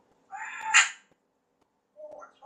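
African grey parrot giving one short call just under a second long, climbing to a loud, high-pitched peak before cutting off.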